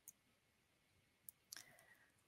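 Near silence with a few faint mouse clicks as a presentation is advanced to the next slide: one near the start and two more about a second and a half in.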